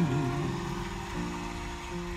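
A song playing through a car stereo's speakers, streamed over Bluetooth from a phone. The melody thins out about a second in, leaving mostly the low bass notes.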